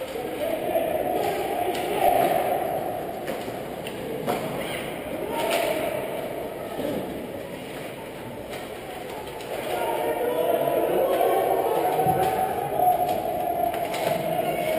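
Indistinct voices murmuring in a large, echoing indoor ice rink, louder near the start and again in the last few seconds, with one sharp knock about four seconds in.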